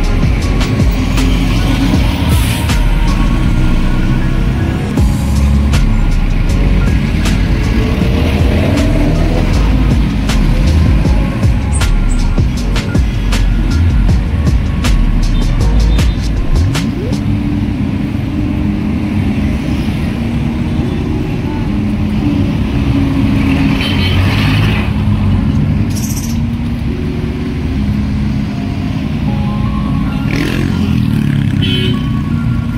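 Busy city road traffic, with cars, jeepneys and motorcycles running and passing, mixed with a steady background music track.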